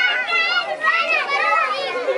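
A group of young children talking and calling out all at once, many high voices overlapping.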